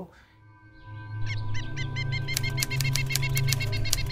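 Background music for a scene change: a low, sustained drone fades in, joined by a steady high tone and rapid, repeated bird-like chirps and clicks.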